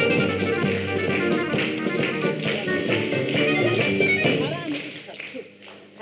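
Lively music with quick changing notes, fading away about five seconds in.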